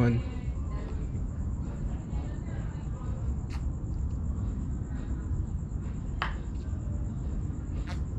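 Man chugging milk straight from a plastic gallon jug: faint gulping under a steady low rumble and a thin high whine, with two short clicks, one in the middle and one later on.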